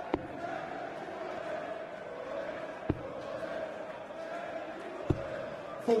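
Three steel-tipped darts striking a Unicorn bristle dartboard, one about every two and a half seconds, each a short sharp thud, over the steady murmur of an arena crowd.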